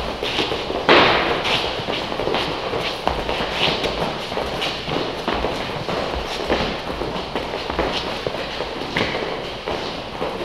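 A group's hands and feet thudding and scuffing on rubber gym flooring during a drill on all fours: a steady run of irregular knocks and taps, with one louder thump about a second in.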